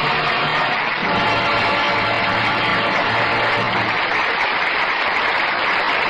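Loud, steady orchestral music, the closing musical curtain of an act in a radio drama.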